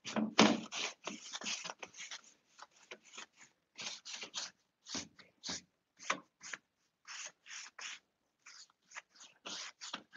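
Paintbrush being dry-brushed over the painted wood of a wardrobe: a run of short, scratchy bristle swishes, about two to three a second, with a brief pause about eight seconds in.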